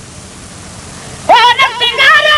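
A solo male voice chanting a Sindhi naat. A short pause over steady hiss gives way, about a second in, to a new phrase sung with gliding, ornamented pitch.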